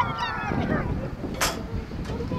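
A person's long high-pitched yell, sliding down in pitch and dying away within the first second, over a steady wind rumble on the microphone; a short hiss about one and a half seconds in.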